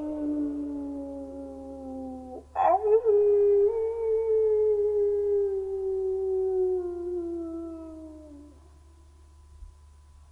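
A dog howling: one howl ends about two seconds in, then a second, longer howl swoops up at its start and slowly falls in pitch, fading out about eight and a half seconds in.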